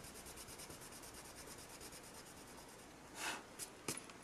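Faint scratching of a Prismacolor colored pencil scribbling a small test swatch on Bristol paper, with a short louder rustle about three seconds in and a sharp tick just before the end.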